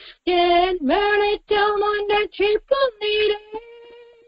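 A woman singing a Tamil Christian song solo in a high voice, with no instruments. Short phrases step between notes and end on a held note that fades away.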